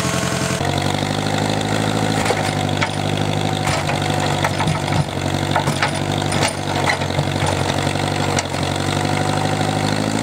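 Old tractor-loader's engine idling steadily while still warming up, with a few scattered short clicks and knocks.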